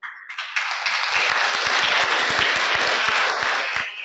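Audience applauding: many hands clapping together, swelling up within the first half second, holding steady, then dying away just before the end.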